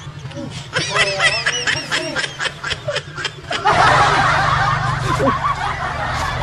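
A man snickering and chuckling close to a handheld microphone, in quick repeated bursts. A little past halfway a louder, steady rushing noise takes over.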